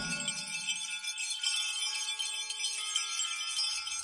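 Wind chimes ringing in a steady shimmer over a few held, sustained tones, right after loud drum-driven music breaks off.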